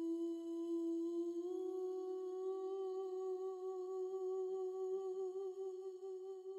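One long held note, steady in pitch, stepping up a little about a second and a half in and wavering slightly after that.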